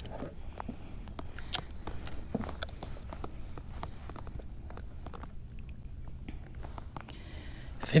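Scattered light clicks and knocks as a caught largemouth bass is handled and laid on a plastic measuring board, over a low steady rumble, with a brief rustle near the end.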